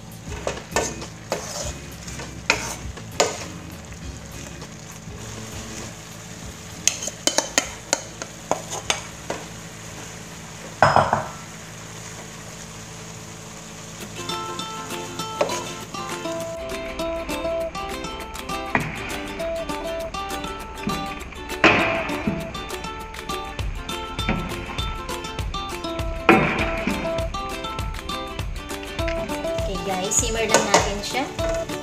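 A spatula scraping and clanking against a wok as cabbage and bean sprouts are stir-fried, over a faint sizzle. About halfway through, background music comes in and plays under further stirring clanks.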